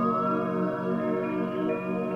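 Electronic synthesizer music: sustained organ-like chords under a high lead tone that glides upward in pitch, peaking just after the start, then repeats fainter several times like an echo.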